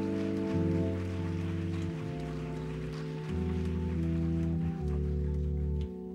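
Organ-style keyboard playing slow, held chords over a deep bass note, the chords changing about every second. The music drops in level just before the end.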